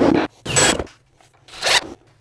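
Three short scrapes as a pry bar levers the last hardwood floorboard against the wall, squeezing it tight into the groove.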